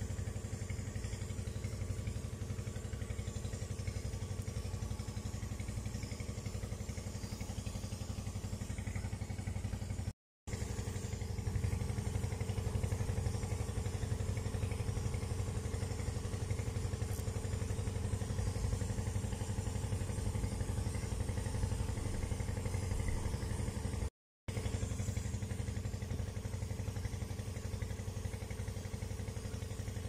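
A motor running steadily with a low, even hum that never changes pitch. It is broken twice by a brief silence, about a third of the way in and again near the end.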